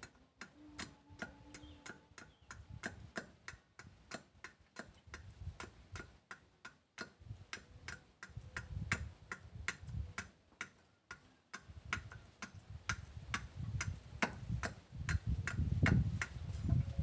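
A large blade shaving a wooden knife handle in quick short strokes: a sharp click about three times a second, with low thuds underneath that grow louder near the end.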